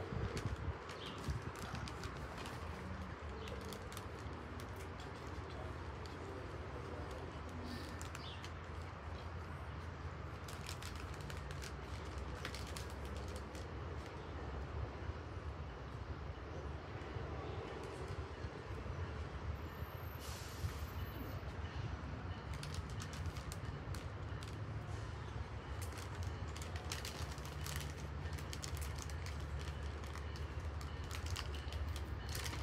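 Distant rumble of an approaching diesel passenger train, low and steady, growing a little louder near the end, with scattered faint clicks over it.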